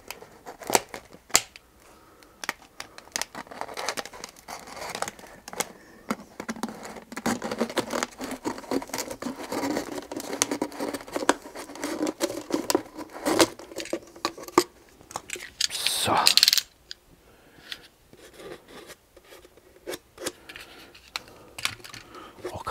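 A utility knife cutting open a clear plastic drink bottle: a long run of quick crackles, clicks and scrapes as the blade works through the plastic and the bottle flexes. A louder crunch comes about three-quarters of the way through, followed by quieter, scattered handling noises.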